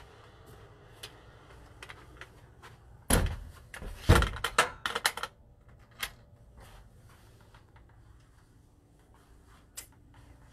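A door being handled: a loud run of clunks and rattles about three seconds in, lasting about two seconds, with scattered small clicks before and after.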